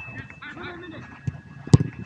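A football struck hard, one sharp thump near the end, with a smaller knock shortly before it; players shout calls to each other throughout.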